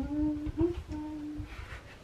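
A woman humming a few notes of a tune to herself: a held note, a brief slightly higher one, then another held note that stops about a second and a half in.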